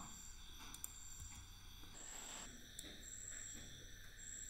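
Quiet room tone: a faint steady hiss and electronic whine from the recording chain, with a few faint ticks.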